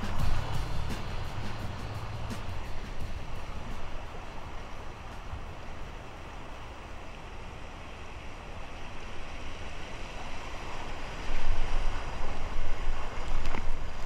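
Creek water rushing and splashing around a kayak running a shallow riffle, with a low rumble of wind on the microphone. About three quarters of the way through it gets louder and choppier as the bow hits the rapid and the paddle strokes splash.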